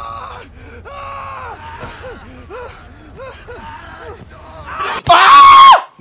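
A person groaning and whimpering in short, repeated cries of pain, then letting out a loud, long scream about five seconds in.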